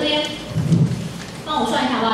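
A woman's voice over a handheld microphone, broken by a low rumbling bump about half a second in, typical of the microphone being handled.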